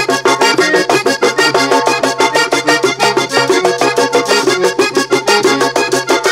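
Vallenato music led by a diatonic button accordion, played over a bass line and a quick, even percussion beat.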